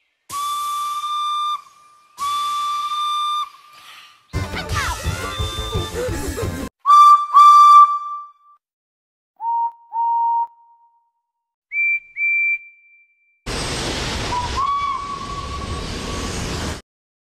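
A steam whistle sounding in a series of paired, steady single-note toots at different pitches: two long toots, two short very loud ones, two lower ones and two high short ones. Near the end comes the heavy hiss of a steam locomotive venting steam, with its whistle sounding over it. This is the SNCF 231K8 Pacific steam locomotive.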